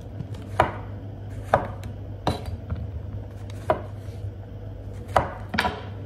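Kitchen knife slicing through button mushrooms and knocking on a wooden cutting board: about six separate cuts at an uneven pace, each a short sharp tap.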